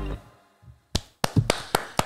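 Pop music ending and dying away, then a short gap and a quick run of about five sharp hand claps, roughly four a second, starting about a second in.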